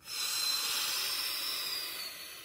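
A man drawing a long, deep breath in close to the microphone, a hissing rush of air steady for about a second and a half and then tailing off. It demonstrates a maximal inspiration: the extra air, the inspiratory reserve volume, taken in on top of a normal breath.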